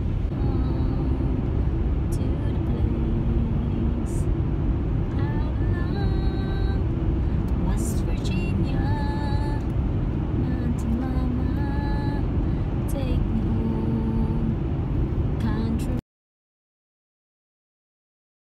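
Steady road and engine rumble inside a moving car's cabin, with a voice singing over it in held notes. The sound cuts off abruptly about sixteen seconds in.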